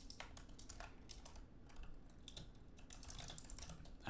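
Typing on a computer keyboard: faint, irregular keystroke clicks as a line of code is typed.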